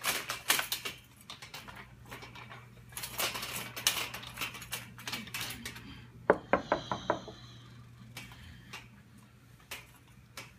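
Irregular rattling and clicking over a steady low hum, with a quick run of sharp clicks and a brief shrill tone about six seconds in.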